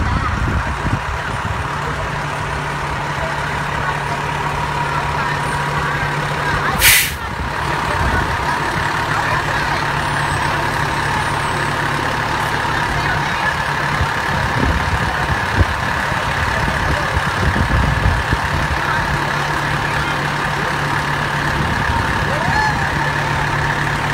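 Fire engine's diesel engine running steadily as it rolls slowly past, with one short, sharp hiss of its air brakes about seven seconds in.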